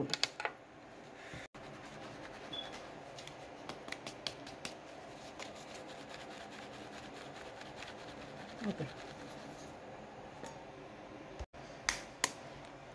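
Flour mix being sifted and stirred in a mesh sieve: a faint, steady scratching and rubbing, with a run of light clicks a few seconds in.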